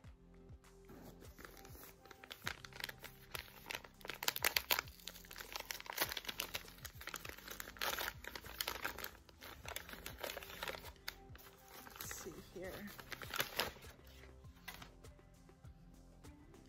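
Wrapping paper and tissue paper being crinkled and torn open by hand, in irregular rustling bursts that are loudest about four to five seconds in and again near the end, with soft background music underneath.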